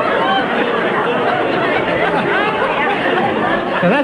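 Many voices talking over one another at once: a steady stream of indistinct chatter with no single voice standing out.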